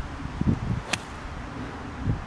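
Iron club striking a golf ball off the fairway turf: one sharp, crisp click about a second in, over low wind rumble on the microphone.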